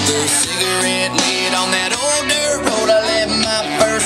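Music with guitar and a singing voice.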